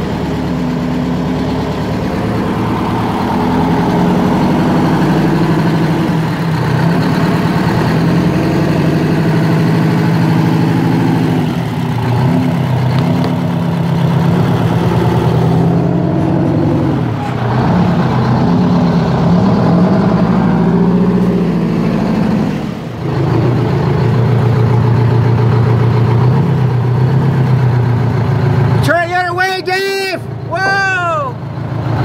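The Walter RDUL truck's engine running under load as the truck is driven, its engine speed rising and falling several times through the middle. It runs on seven of its eight cylinders because the fuel lines to one injector were left off.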